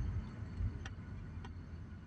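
Low vehicle rumble heard inside a car with its sunroof open, with two faint clicks less than a second apart.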